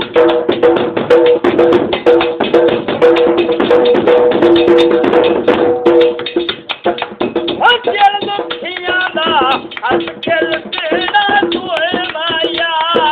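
Punjabi folk mahiya music: a dhol beaten in a fast, dense rhythm, with a steady held two-note drone over it for about the first half. A voice singing comes in a little past halfway.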